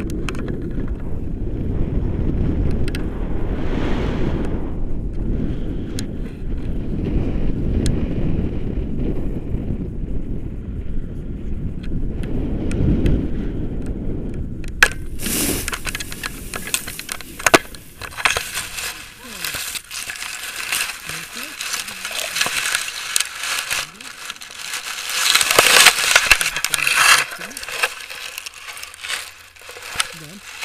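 Wind buffeting the action-camera microphone of a tandem paraglider in flight, a low rumble. About halfway through it changes suddenly to a brighter rustling hiss as the glider skims low over a grassy slope. Near the end come louder rustles and clicks as grass and harness brush the microphone on landing.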